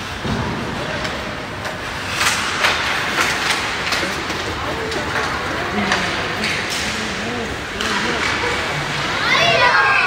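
Ice hockey game ambience in a rink: sharp clacks of sticks on the puck and ice, skates scraping, and children's and onlookers' voices calling out, rising to a loud shout near the end.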